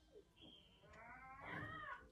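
A single drawn-out, meow-like animal call that rises and then falls in pitch, starting about a second in.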